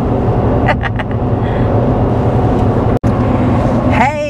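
Steady low road and engine drone inside a pickup truck's cab at highway speed, with a short laugh about a second in. The sound cuts out for an instant about three seconds in, then the drone carries on.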